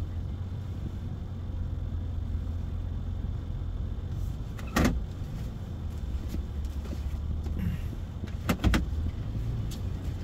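Steady low hum of a truck's engine heard inside the cabin while parking at low speed. It is broken by a sharp click about halfway through and two quick clicks near the end.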